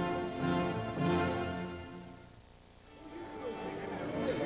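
Orchestral music with held string chords that fades out about two seconds in, then orchestral playing starting up again near the end.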